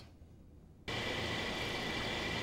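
Ambient sound of a broiler chicken house cutting in abruptly almost a second in after near silence: a steady, even rushing noise with a faint high hum.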